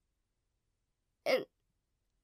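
Near silence, broken just over a second in by a woman's voice saying one short, falling word, "And".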